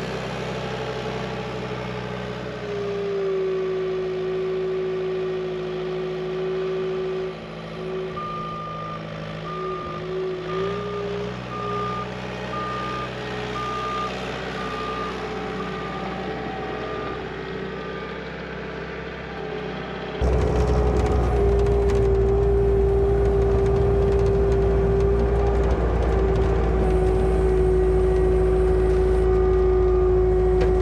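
Bobcat T320 compact track loader's diesel engine running as the machine works, with its backup alarm beeping about once a second for some ten seconds while it reverses. About two-thirds of the way in, the sound changes suddenly to a louder, deeper engine rumble.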